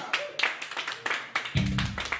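Scattered hand clapping from a small crowd, with a short laugh. About one and a half seconds in, a loud, low, sustained note from an amplified stage instrument rings out.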